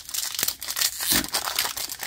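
Foil wrapper of a trading card pack crinkling and tearing as it is ripped open by hand, a dense run of crackles.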